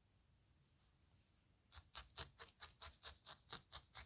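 Rapid repeated pokes of a felting needle through wool into a foam pad, about five or six short scratchy ticks a second. They start just under two seconds in, after near silence.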